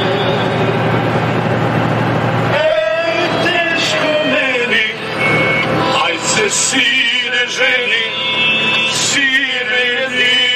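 Truck cab: engine and road noise under music for the first couple of seconds, then from about three seconds in a man sings with a wavering voice over the running truck.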